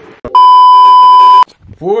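A loud, steady electronic beep lasting about a second: a censor bleep edited into the soundtrack. A man's voice starts speaking near the end.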